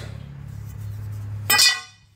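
A ringing metallic clink about a second and a half in, the loudest sound here, over a steady low hum that fades out just after it.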